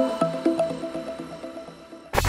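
Background music: a quick repeating figure of short pitched notes, about four a second, fading out.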